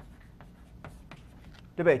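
Chalk writing on a blackboard: a string of short, faint taps and scratches as a word is chalked out. A man's voice comes in near the end.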